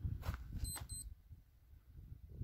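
Two short, high electronic beeps in quick succession about a second in, over a low rumbling noise on the microphone.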